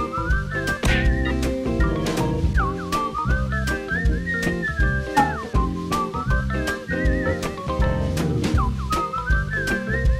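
Background music: a whistled melody that slides up and down over a steady, bouncy beat and bass line.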